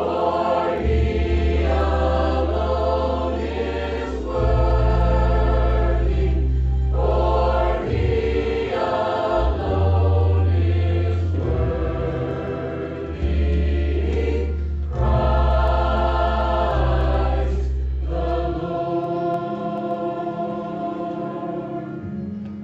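Mixed choir singing a Christmas worship song over an accompaniment with deep held bass notes that change every few seconds. Near the end the bass drops out and the singing softens.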